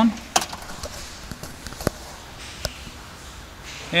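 A few scattered sharp clicks from the microlight's ignition key and switches being turned on, over a faint steady background hum. No pulsing strobe interference comes through.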